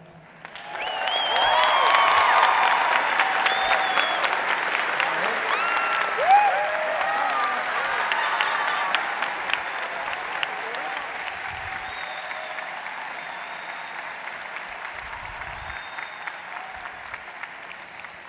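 Large audience applauding, with whoops and shouts of cheering in the first half; the applause swells about a second in and then slowly dies away.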